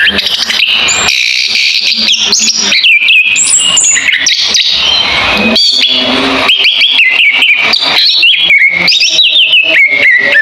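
A caged songbird sings loudly in a fast, unbroken stream of varied chirps and whistled phrases, mixed with sharp clicks and short up-and-down pitch slides.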